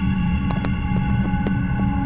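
Soundtrack drone: a steady low hum with several held tones above it, sprinkled with irregular clicks and crackles.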